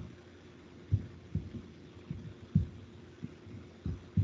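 Muffled low thuds at irregular intervals, about six in four seconds, over a faint steady hum: a computer being handled and clicked close to its microphone while a presentation is brought up for screen sharing.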